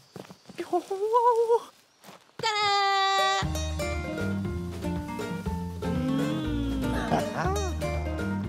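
A cartoon character's wavering, bleat-like vocal cry, then a short high held note, followed from about three and a half seconds in by background score music with a steady bass line and chords.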